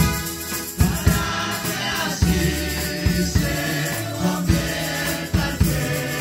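Live gospel worship music: women singing through a PA, with a stringed instrument, shaken tambourines and low thumps on a steady beat.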